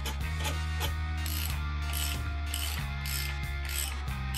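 A socket ratchet clicks in repeated short strokes, about two a second, as it undoes the bolts of a motorcycle's rear-set footrest bracket. Background music with sustained bass notes plays underneath.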